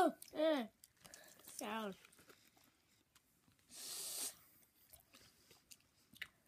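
A boy making short wordless vocal sounds, two falling in pitch in the first two seconds, while chewing sour bubble gum. A brief hiss-like burst of noise comes about four seconds in.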